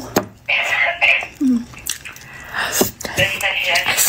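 A woman eating a mouthful of food that is too hot: wet mouth sounds with breathy puffs of air and short hummed murmurs as she tries to cool it in her mouth.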